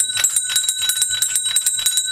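Brass school handbell rung rapidly by hand, its clapper striking about ten times a second over a steady, high metallic ring.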